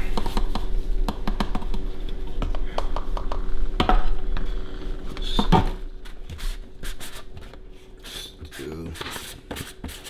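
Plastic scoop scraping and tapping inside a plastic tub of whey protein powder as the powder is scooped out, a run of quick scrapes and clicks through the first several seconds that thins out later.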